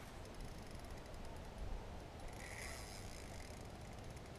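Faint rapid clicking of a fishing reel as a hooked bull redfish is fought on the line, over a low rumble of wind on the microphone, with a slightly louder stretch a little past halfway.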